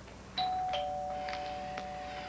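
Two-note doorbell chime, ding-dong: a higher note about a third of a second in, then a lower note, both ringing on together. It announces a visitor at the door.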